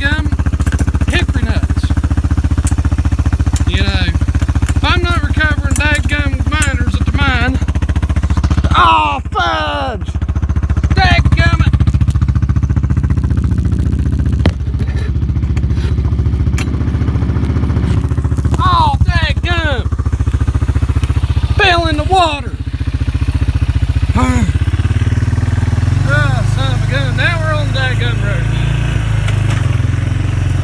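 An ATV (four-wheeler) engine running steadily at a low drone, its note changing about five seconds before the end.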